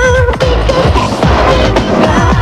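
Early-1990s eurodance/techno music from a continuous DJ mix: a steady pounding kick drum and percussion, with a wavering synth or vocal line at the start.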